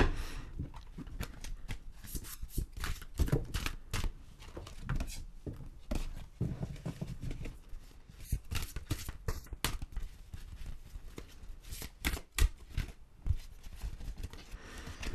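A deck of oracle cards being shuffled and handled by hand, with irregular quick flicks and taps.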